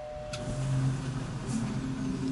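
A steady low hum begins about half a second in and holds one pitch, engine- or motor-like. Near its start there is a single click, and a thin high tone dies away within the first second.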